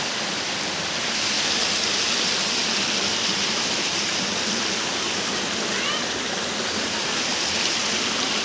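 Floodwater from a breached river embankment rushing fast through a flooded village: a steady, unbroken rush of turbulent flowing water.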